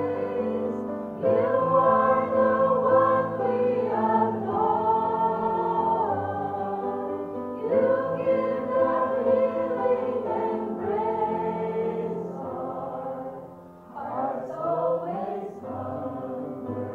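A small group of women singing a worship song together in long held phrases, with a brief lull about 14 seconds in.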